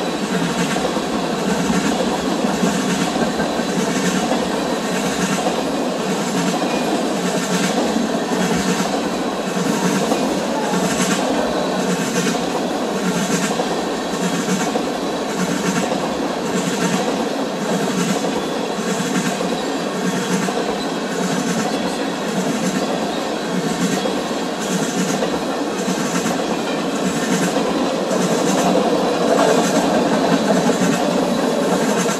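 Oil tank cars of a long freight train rolling past close by: a steady rumble of steel wheels on rail with a regular clickety-clack, about one click every two-thirds of a second, as wheelsets cross rail joints. It grows a little louder near the end.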